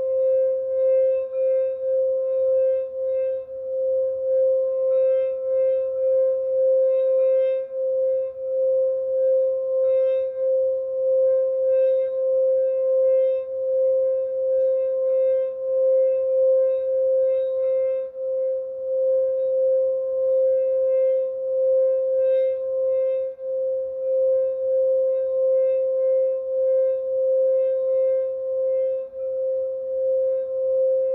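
Singing bowl played by rubbing a mallet around its rim, giving one sustained ringing hum that wavers slightly in level, with a fainter higher overtone above it.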